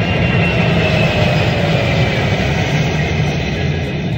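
Jet airplane fly-by sound effect: a steady jet roar with a faint whine that slowly falls in pitch.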